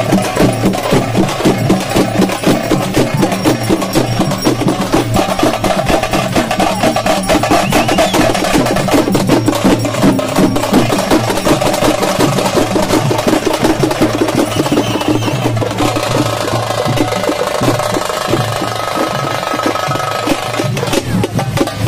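Fast, continuous drumming, a dense run of rapid strokes, with the beat thinning out a little about three-quarters of the way through.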